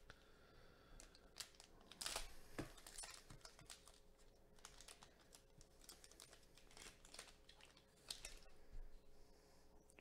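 Faint crinkling and rustling of a foil trading-card pack wrapper and cards being handled, with scattered soft clicks, a little louder about two seconds in and again near the end.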